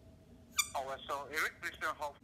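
A man's high-pitched falsetto squeals: a run of short, wavering cries starting about half a second in.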